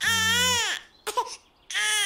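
A baby crying: one long high-pitched cry that rises and falls in pitch, a short whimper about a second in, then another cry starting near the end.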